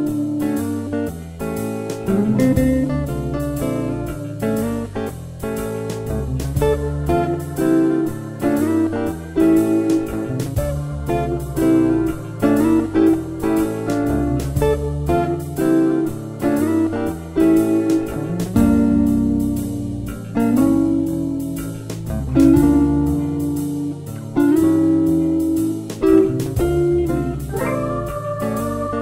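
Instrumental break of a blues-tinged song: guitar-led band music over bass with a steady beat, no vocals.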